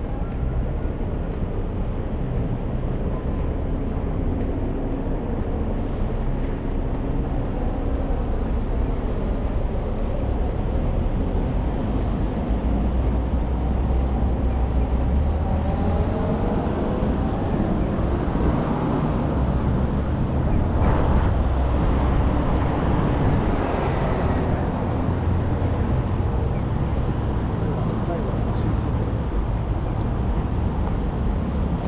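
Street ambience beside a busy multi-lane city road: a steady noise of car traffic passing close by, a little louder in the middle.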